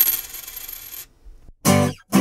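A coin dropped on a hard surface, rattling and ringing as it spins down and settles, dying away about a second in. A short voice-like sound follows near the end.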